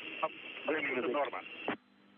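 A voice speaking over a mission radio loop, thin and narrow like a phone line, apparently in Russian since the recogniser wrote nothing down. It stops about three-quarters of the way through, leaving a faint hum on the line.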